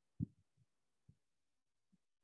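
Near silence broken by a few faint, short low thumps. The first, about a quarter second in, is the loudest, and three fainter ones follow at irregular spacing.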